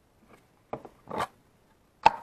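Lid of a tiny whoop carrying case being slid off its base: a few short scrapes, then a louder scraping rustle as it comes free.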